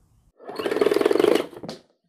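A rapid buzzing rattle lasting about a second, then a short click: a sound effect leading into a logo sting.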